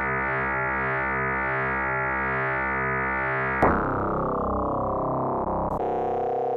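Korg opsix synthesizer holding a wavefolded tone made of slightly detuned waves. The tone beats steadily two or three times a second, and the beating shifts its harmonic content as well as its pitch. A little past halfway the timbre changes abruptly and turns duller, as the operator's wave shape is switched.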